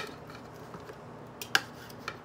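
Knife and fork cutting steak on a plate: quiet at first, then a sharp click of cutlery on the plate about one and a half seconds in, followed by a few lighter clicks.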